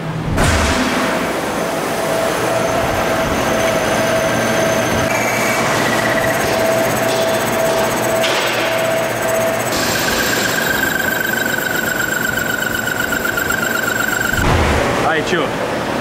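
Metal lathe turning a metal ring for a driveshaft flange: a steady machining noise with a high, slightly wavering tone from the cutting tool. It runs in several spliced stretches, and the pitch of the tone changes abruptly at each splice.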